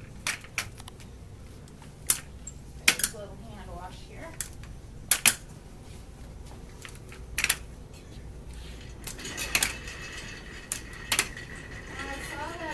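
Metal folding walker knocking on a hard floor as it is lifted and set down with each step, about a dozen sharp clacks, unevenly spaced roughly a second apart.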